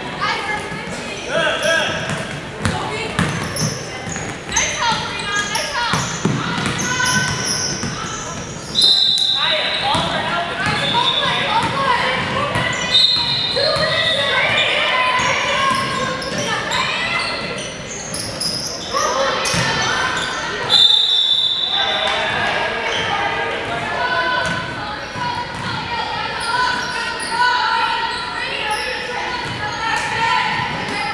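A basketball bouncing on a hardwood gym floor during play, with players' and spectators' voices echoing in a large gym. A referee's whistle blows three short, sharp blasts: about a third of the way in, a few seconds later, and once more past the middle, the last being the loudest sound.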